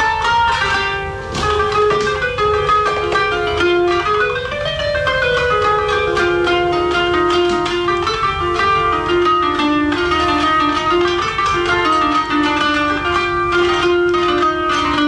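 Kanun, the Turkish plucked zither, playing a solo improvised taksim in makam Acemaşîrân: a single melodic line of plucked notes that steps up and down.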